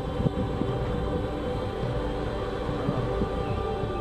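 Background music with a steady low engine rumble under it from a self-propelled crop sprayer driving through the field.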